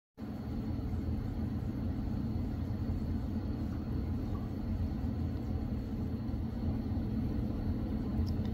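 Steady, low-pitched rumbling background noise with a faint, thin, high steady tone above it. There are no distinct clicks or knocks.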